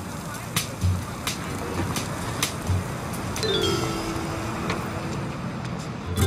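City street ambience: steady traffic noise with scattered sharp clicks and a couple of low thumps. Midway through, a pitched tone slides down and then holds for about two seconds.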